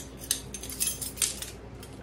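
Metal measuring spoons jangling and clinking as they are handled, in a quick run of irregular light clicks.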